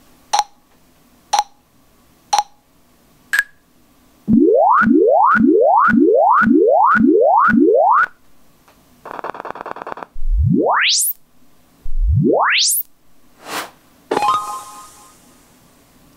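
Sonarworks Reference 4 calibration test signals played through studio monitors to check the measurement mic's input gain: four short ticks about a second apart, then a run of seven short rising chirps, a short buzzy noise burst, and two long tones gliding up from deep bass to a high whistle. A click and a brief hiss with a few steady tones follow near the end.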